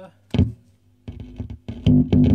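Live guitar cable's jack being pulled from and pushed into the distortion pedal's output jack, heard through the Laney VC30 valve amp: a loud pop about a third of a second in, then from about a second in a run of loud crackles over a steady mains hum.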